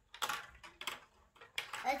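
Marbles rolling and clacking down a plastic building-block marble-run track: a quick, irregular string of light clicks and rattles.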